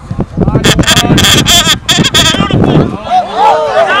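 Loud wordless shouting and yelling from players and sideline spectators close to the microphone, in a rough, jumbled burst for the first three seconds, then drawn-out rising-and-falling calls near the end.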